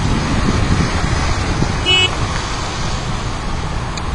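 Street traffic noise with a steady low rumble, and one short, high-pitched toot about two seconds in.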